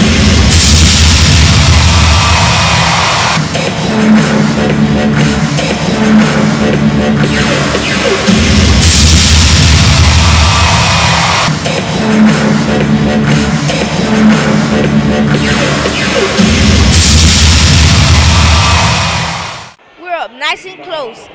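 Loud arena music with a heavy low beat, over which a stage special-effects jet cannon fires three times, each blast a loud hiss lasting about three seconds: near the start, around the middle and near the end.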